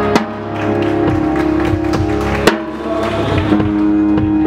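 A live rock band playing, heard from close behind the drum kit: held electric guitar notes over drums, with two sharp accented drum-and-cymbal hits, one at the start and one about two and a half seconds in.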